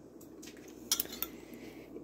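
A metal spoon clinking a few times against a ceramic bowl, about a second in, as it stirs and scoops thick sauce.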